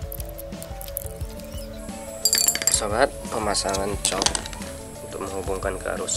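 Hard plastic parts of a two-pin mains plug clicking and clinking as they are fitted together by hand, loudest about two to three seconds in, over background music.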